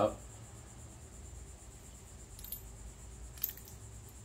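Faint clicks of small steel parts being handled, a rocker arm with its loose needle bearings just pressed out, over a low steady hum. The clicks come about midway and, a little sharper, near the end.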